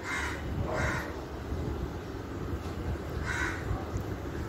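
Three short, harsh bird calls: two in quick succession near the start and a third near the end, over a low steady background hum.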